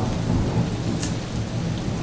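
Steady rain with a low, continuous rumble of thunder.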